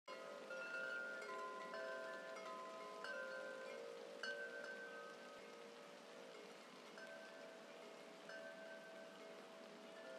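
Soft chime tones ringing at several different pitches, a new one struck every second or so and left to ring, growing sparser in the second half.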